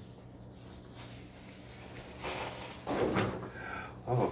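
Loose sheets of paper sheet music being shuffled and handled, with rustling that starts about halfway through and is loudest near three seconds in.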